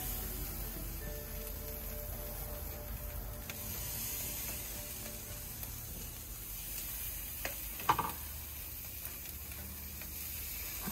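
Seasoned salmon fillets sizzling on the hot grate of a barbecue grill, a steady hiss as they are laid on skin side down. A couple of short clicks about eight seconds in.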